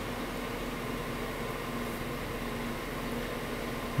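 Steady, even machine hum with a faint hiss and a faint constant tone, without any distinct events.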